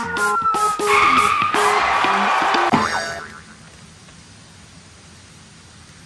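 A short comic sound-effect jingle with clicks, stepped notes, a slowly falling tone and a noisy swell, lasting about three seconds. It cuts off about three seconds in, and a faint steady hiss of outdoor background follows.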